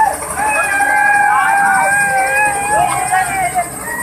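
Long, drawn-out shouts from a crowd of children, several held calls overlapping, over the low running noise of a small helicopter on the ground with its rotor turning.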